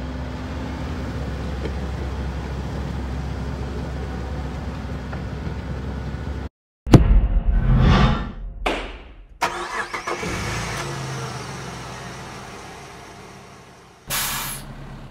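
CASE crawler excavator's diesel engine running steadily. It cuts off abruptly and, after a moment of silence, graphics sound effects follow: a loud hit, whooshing sweeps and a sharp knock, then a sound that slowly fades away.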